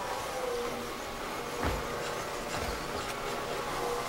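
Electric rotary floor buffer running steadily, with a few low thumps.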